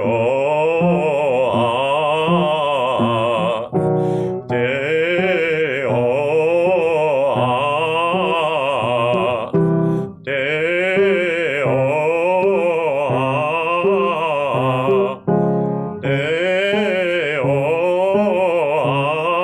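Male voice singing a fast up-and-down vocalise warm-up on the "ah" vowel, in three long phrases with short breaks between them, heard through a video call's narrow sound.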